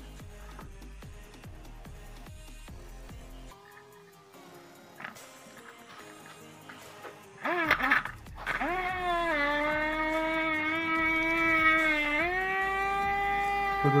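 Quiet background music, then from about eight seconds in a small DC toy motor whirring steadily as it spins the matchbox helicopter's rotor, its pitch settling lower at first and stepping up a little near the end.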